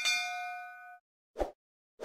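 Notification-bell sound effect: a single bright bell ding that rings out with several clear tones for about a second, followed by a short, dull knock-like effect about a second and a half in.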